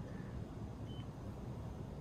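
Low, steady background hum of room tone, with one faint, short high-pitched beep about a second in.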